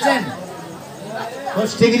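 Speech only: a man preaching into a microphone, his phrase trailing off at the start and a single word, "Sarkar", near the end, with a short pause between.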